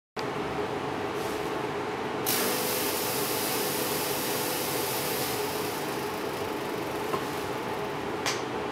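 Steady whir of the Corsair Obsidian 700D's stock case fans with a fog machine running, holding a low hum throughout. A louder hiss cuts in suddenly about two seconds in and fades over the following few seconds, as the fog machine puffs out fog.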